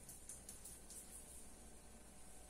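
Near silence: room tone with a few faint, soft scratches of a marker pen tracing around a cardboard template on a wall.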